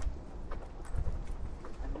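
Irregular clacking steps on a hard paved path, with a steady low wind rumble on the microphone.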